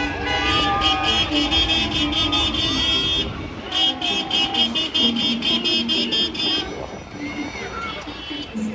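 Truckload of graduates passing close by, shouting and cheering over low truck noise, with a shrill, rapidly pulsed tooting that runs about three seconds, breaks briefly, then runs about three seconds more.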